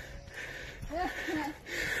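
Low outdoor background noise with a brief, faint voice about a second in.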